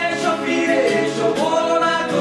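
Music: a Bengali song, with voices singing and holding long, sliding notes.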